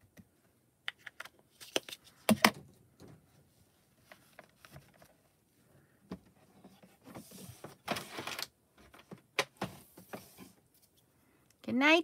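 Hands working stamping tools: an ink pad pressed onto a clear acrylic stamp and the hinged plate of a stamp-positioning platform brought down on the card and lifted. This gives a few sharp clicks and knocks, the loudest about two seconds in, with stretches of rustling later on. A voice says "hi" at the very end.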